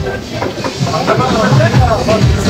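A voice saying "tamam" ("okay") over music playing in the background.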